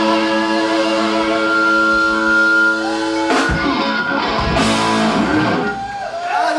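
Live rock band with two electric guitars and drums holding a final chord that rings on steadily. About three seconds in, a run of loud drum and cymbal hits ends the song, with the guitars wavering and bending under them.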